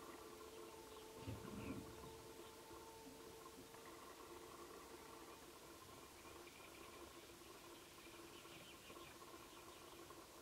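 Near silence: a faint steady hum, with a soft short sound about a second and a half in and a few faint high chirps near the end.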